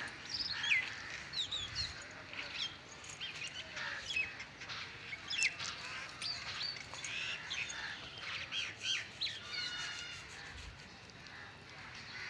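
Birds chirping: a string of short, quickly rising and falling calls, one after another, through the whole stretch.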